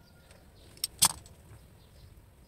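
Two short, sharp clicks about a fifth of a second apart, a second in, the second much louder, from handling a utility knife and a white coaxial cable while stripping the cable's end.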